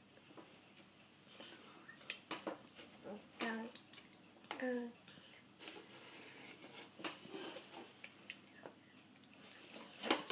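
Baby eating finger food: scattered faint mouth clicks and smacks, with two short vocal sounds about three and a half and just under five seconds in.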